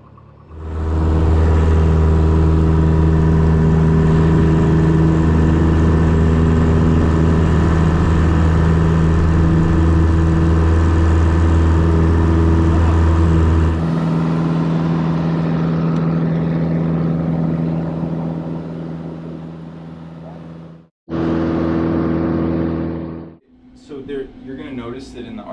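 Piper Cherokee PA-28-180's four-cylinder engine and propeller at full takeoff power, heard from inside the cabin. The power comes up about half a second in and the engine then runs steadily through the takeoff roll and climb; the deepest part of the sound falls away about halfway through, and it cuts out briefly near the end.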